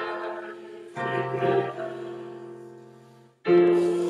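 Hymn music: piano chords with voices singing. A new chord is struck about a second in and another near the end, each fading before the next.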